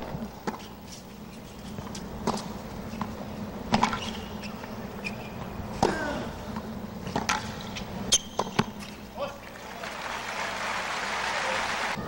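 Tennis rally on a hard court: racquets striking the ball about every one and a half to two seconds. Crowd applause rises over the last couple of seconds.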